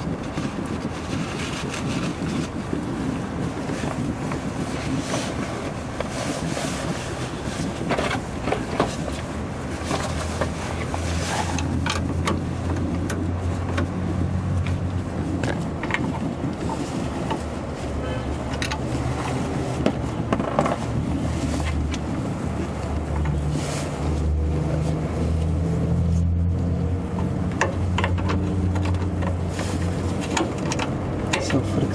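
Scattered metallic clicks and taps of a wrench and clip being worked on a brake hose fitting under a truck. A low motor rumble runs underneath and grows stronger about a third of the way in, its pitch shifting near the end.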